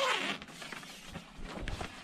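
Tent fabric rustling and crinkling as the half-moon window flap is opened and folded down, with scattered faint crackles.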